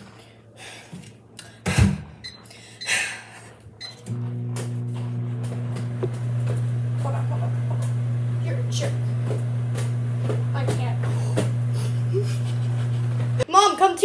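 Microwave oven running with a steady low hum for about nine seconds, starting about four seconds in and cutting off suddenly near the end. A sharp knock comes about two seconds in.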